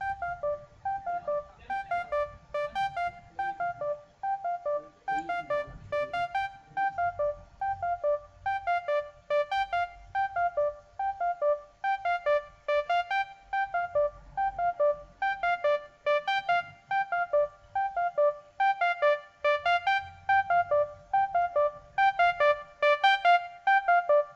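Keyboard-style synth lead playing a repeating melody of short notes, about three a second. It starts subdued and grows louder and brighter across the passage as an EQ automation opens it up.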